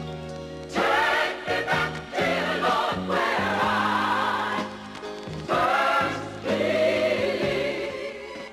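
Gospel music: a choir singing full-voiced phrases over instrumental backing. The voices come in about a second in, break off briefly just past the middle, and come back in.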